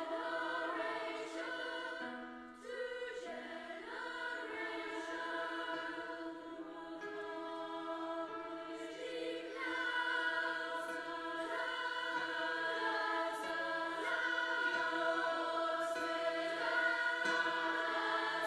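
A large choir of children and teenagers singing long held notes in full chords.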